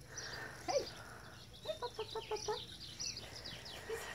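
Small birds chirping repeatedly in the background, with a quick run of short notes about two seconds in.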